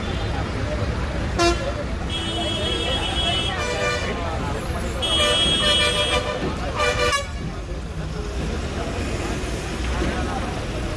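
Vehicle horns tooting several times over steady traffic rumble and voices: a short blast about a second in, longer ones around two and five seconds in, and another near seven seconds.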